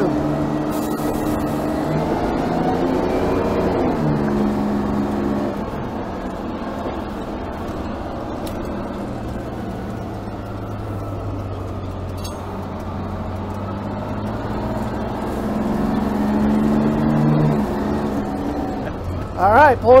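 1955 Crown Firecoach's Detroit Diesel 6V92 two-stroke V6 pulling the fire engine along, heard from the open cab. Its pitch climbs, then drops sharply about four seconds in as the Allison automatic upshifts. It runs steady and lower for a while, then climbs and drops again near the end.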